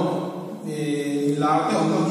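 A man's voice through a handheld microphone, holding one long level-pitched vowel in the middle of his talk before speaking on.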